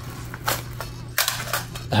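Handling noise of nylon and plastic tactical gear as a magazine pouch is lifted off a plate carrier's front panel: a few short clicks and scuffs, one about half a second in and a quick cluster a little past a second.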